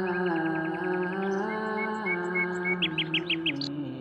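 Small birds chirping in short runs, the loudest burst of about six quick chirps near the end, over a sustained droning tone that steps in pitch now and then.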